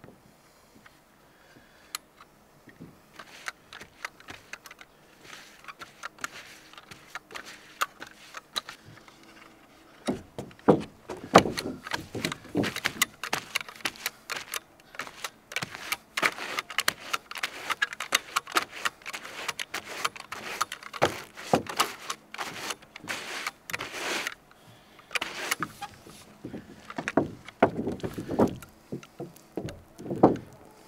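Push broom brushing roofing tar over a trailer roof: quick repeated scraping strokes, sparse and faint at first, then louder and close from about ten seconds in, with a couple of short pauses.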